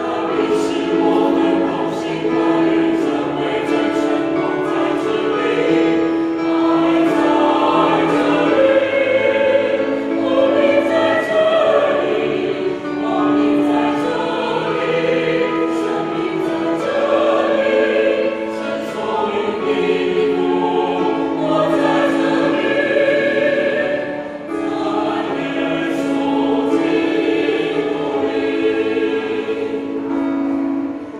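A mixed choir of men's and women's voices singing a hymn, holding long notes.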